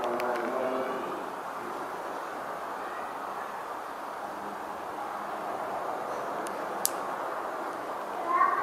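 Steady background noise with no clear source, with a person's voice briefly at the start and a single sharp click near the end.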